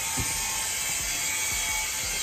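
A steady machine-like whir with hiss in the background, with one light tap near the start.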